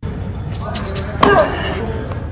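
Tennis balls being struck by racquets and bouncing on an indoor hard court, a series of sharp pocks with a louder hit about a second and a quarter in.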